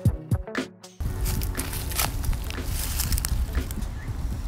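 Intro music with a beat cuts off about a second in, giving way to outdoor handheld sound: a steady low rumble on the microphone with footsteps and rustling in dry leaf litter.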